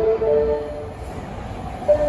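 Osaka Metro Midosuji Line subway train approaching the underground platform, a low rumble from the tunnel. A melody of held notes plays over it for the first second or so, then drops out.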